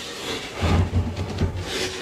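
Wooden mock-up fuel tank scraping and rubbing against the edge of the opening as it is eased down through it: a continuous dry scrape that grows heavier and lower from about half a second in.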